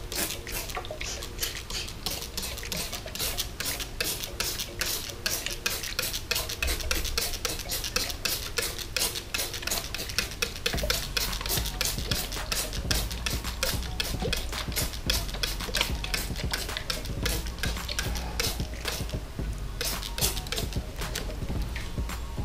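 Plastic trigger spray bottle being squeezed over and over in quick succession, each pull giving a short hiss of water spray, wetting dry aquarium soil.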